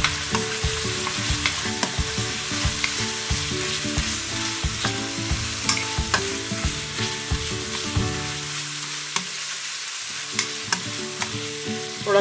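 Onion-tomato masala with ground spices sizzling in hot oil in a metal kadai, stirred with a black spatula that scrapes and knocks against the pan at irregular intervals.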